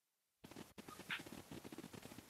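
Near silence: faint room noise on a video-call line, with one brief faint sound about a second in.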